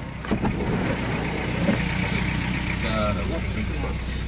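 Hyundai Starex's 2.5-litre turbo diesel engine idling steadily.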